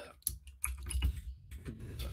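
Computer keyboard typing: a run of quick, irregular key clicks as lines of code are edited, over a low hum.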